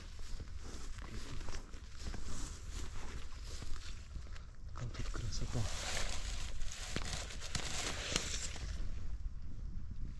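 A wooden berry picker raked through blueberry bushes: leaves and twigs rustling with many small clicks, loudest in the second half.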